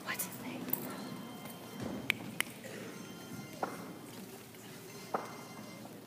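Low background murmur of voices, with about six sharp knocks and taps scattered through it.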